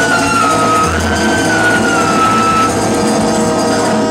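Live salsa band playing, with congas and a trumpet section. A long held high note drifts slightly in pitch and stops a little after halfway through.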